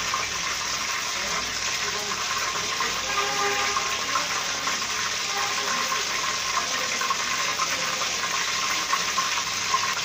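Hot cooking oil sizzling steadily in a wok.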